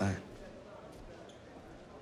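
A man's voice finishes a short question at the very start, then quiet room background with a couple of faint knocks about a second in.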